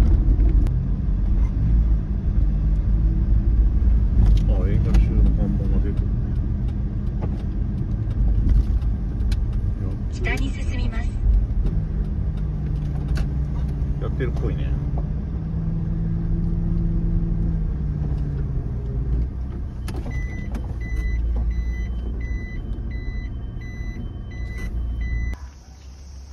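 Kei truck engine running while it is driven and manoeuvred into a parking space, with a regular beeping at about two beeps a second near the end. The engine is then switched off, and its hum cuts out suddenly just before the end.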